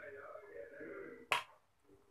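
A metal spoon clicks once, sharply, against a plastic bowl as it is set down, a little over a second in.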